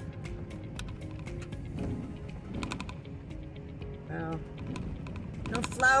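Car driving on a rough gravel road: a steady low road rumble with irregular clicking and rattling from a loose phone holder that is no longer holding tight. A brief voiced sound comes about four seconds in.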